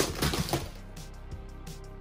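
Plastic wrestling action figures knocked over by a hand and clattering down onto the mat and floor: one sharp hit at the start, then a few light clicks over the next half second.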